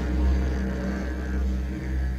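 Film score: a deep, sustained tuba drone holding a low note with a rich stack of overtones, easing off slightly near the end.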